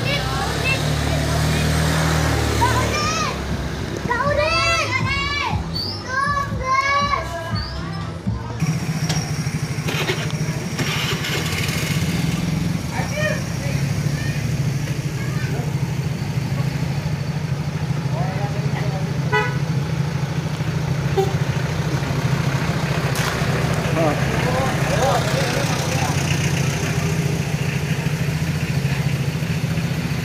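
Vehicle engine running steadily at a low hum, starting about eight seconds in; before that, a group of women and children are chattering.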